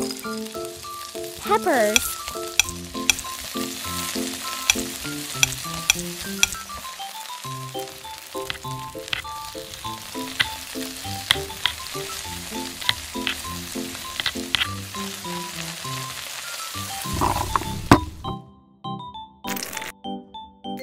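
Oil sizzling steadily in a miniature cast-iron skillet as chopped onion and diced vegetables fry, with occasional sharp clicks as a spoon stirs them against the pan. The sizzling stops suddenly near the end.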